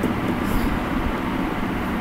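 Steady background noise in a pause between speech: a low rumble and hum under an even hiss.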